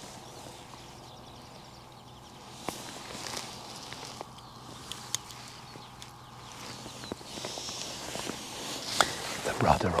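Soft rustling and a few sharp, isolated clicks of close-up handling as an angler works at his tackle on the bank, over a faint steady hiss of rain. A man's voice comes in right at the end.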